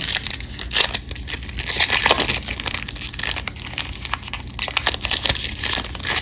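A foil wrapper of a 2021 Topps Big League Baseball card pack being torn open and crinkled by hand: a continuous run of sharp crackling and tearing.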